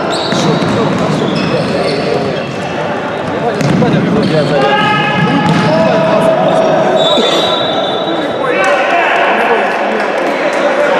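Futsal match in a sports hall: players shouting and calling to each other, with the ball thudding on the floor, all echoing in the large hall.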